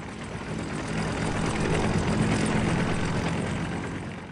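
Propeller airplane flying past: a steady engine drone that swells to its loudest about halfway through and fades away near the end.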